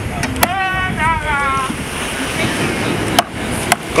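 Sharp knocks of a large knife chopping fish against a wooden cutting board, the clearest two near the end, over a steady wash of wind and surf. A short falling voice call sounds about half a second in.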